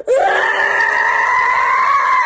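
A woman's long, high-pitched scream, held almost on one pitch and rising slightly, standing in for the squeal of a car's tyres in a dry drift.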